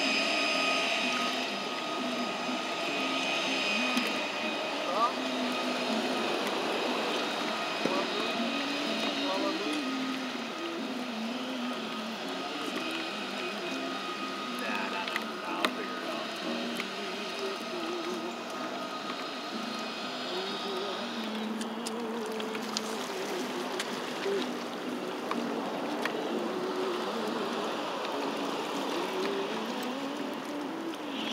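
Indistinct voices of people talking, too faint to make out words, over a steady background hum with a thin high whine that fades out about two-thirds of the way through. A few light clicks are heard.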